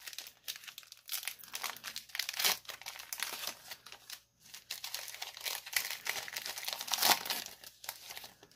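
Foil wrapper of a 2019-20 Mosaic basketball card pack crinkling and being torn open by hand, with louder crackles about two and a half seconds in and again near the end.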